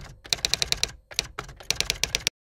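Typing sound effect: a quick run of key clicks, about eight a second, with a brief pause about a second in.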